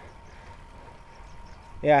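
Faint steady background noise of a road bike being ridden on pavement, with a faint thin steady tone under it. A man's voice starts near the end.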